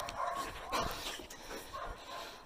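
A dog vocalising in a few short calls in the first second, fairly quietly.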